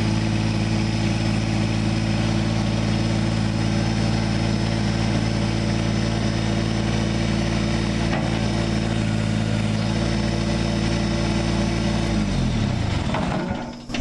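Kubota compact tractor's diesel engine running at a steady speed, then winding down and stopping shortly before the end.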